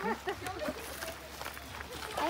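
Quiet background chatter of several people and children talking, with no single voice in front.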